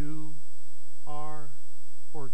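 Steady electrical mains hum, with two short falling-pitched vocal sounds from a man, one at the start and one about a second in.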